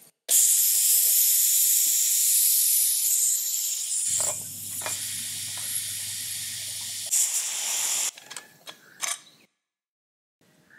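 Pressure cooker venting steam through its vent as the whistle weight is lifted with a ladle to release the pressure after cooking: a loud, steady hiss that weakens after about four seconds, with a short final spurt near eight seconds.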